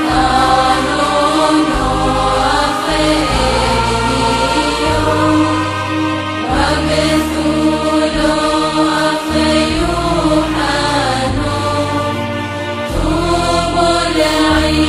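Choral chant music: voices singing held, gliding lines over a deep bass drone that shifts pitch every second or two.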